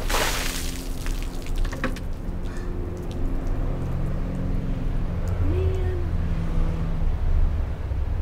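Water dumped from a bucket over a person's head, splashing onto the pavement for about a second. A low steady hum with a few held tones follows.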